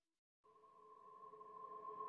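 Near silence, then soft ambient background music of long held tones fading in about half a second in and slowly growing louder.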